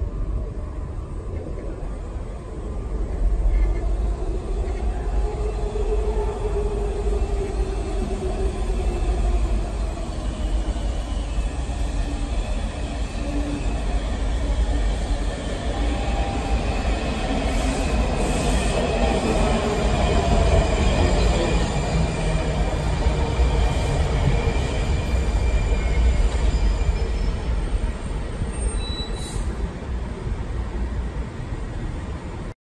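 Washington Metro train running in through the tunnel and braking to a stop at the platform. A low rumble builds from a few seconds in. The motor whine falls in pitch as the train slows, with high steady squealing in the second half until it halts.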